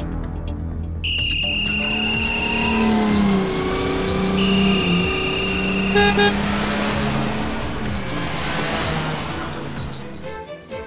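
Traffic-jam sound effects: car horns sounding in long held blasts over a steady noise of running vehicles, with a short burst of honks about six seconds in.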